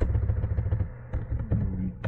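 Keystrokes on a computer keyboard, a handful of separate clicks, over a low steady rumble.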